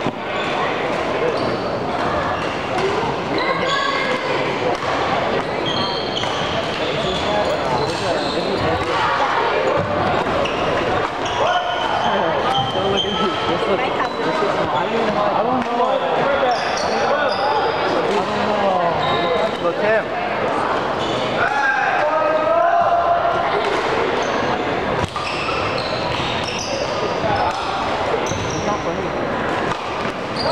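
Badminton play in a large gym: sneakers squeaking and feet landing on the hardwood court, with racket strikes on the shuttlecock, over a steady chatter of voices echoing in the hall.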